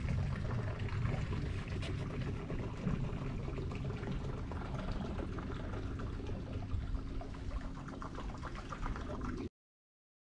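Water gurgling and splashing against the hull of an aluminium tin boat as it moves through the water: a dense, crackly wash that cuts off abruptly near the end.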